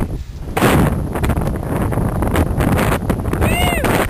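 Wind buffeting the camera's microphone in a loud, rough rumble that starts about half a second in. Near the end a person's voice gives a short call that rises and falls.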